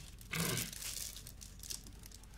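Paper and plastic packaging crinkling and rustling as mail is unwrapped and handled, with scattered small clicks; slightly louder about half a second in.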